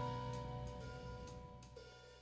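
Background music fading out, a few held notes dying away.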